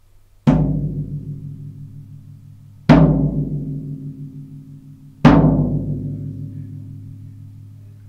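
Floor tom struck three times with a drumstick, light hits about two and a half seconds apart. Each hit rings out with a low, slowly fading tone until the next one.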